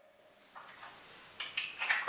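Quiet room with a few faint, short clicks and rustles of small objects being handled, growing a little louder toward the end.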